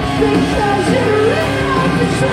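Live rock band playing loudly through a concert PA, with a female lead vocalist singing a gliding melody over the band.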